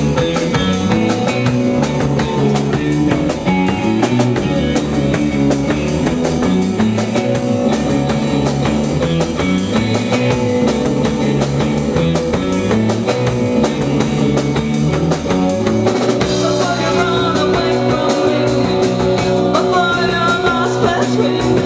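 Live rock band playing: drum kit keeping a steady beat under electric guitar and bass guitar. A higher wavering melody line joins over the top about four seconds before the end.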